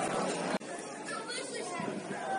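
Voices shouting and chattering at a football ground over the general background noise of the crowd. An abrupt cut about half a second in leaves the sound quieter, with another shout a little later.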